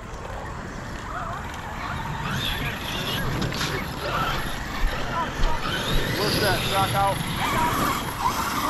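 Electric RC monster truck driving over grass, its motor whirring and tyres rolling, growing louder as it comes closer.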